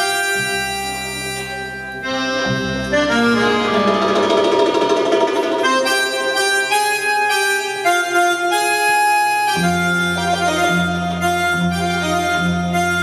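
Live Arabic band music led by a slow accordion melody of sustained notes, with a low held bass note coming in near the end and only a few drum strokes.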